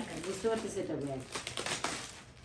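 Clear plastic packaging crinkling as hands open and rummage in a polythene bag, a quick run of crackles in the second half, under quiet talk.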